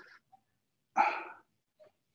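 A dog barks once, loudly and briefly, about a second in.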